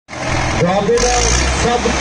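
Tractor engines labouring under full load as two tractors hitched rear to rear pull against each other in a tug-of-war. A low engine rumble swells about a second in, under loud crowd shouting.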